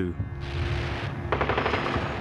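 Battlefield sound of gunfire over a low rumble, with a rapid burst of machine-gun fire starting a little past halfway.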